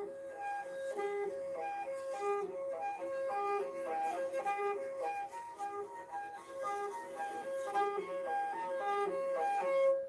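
Morin khuur (Mongolian horsehead fiddle) played in harmonics: bowed very softly while the left hand barely touches the string. A quick repeating figure of short notes hops among a few pitches and ends on a held note near the end.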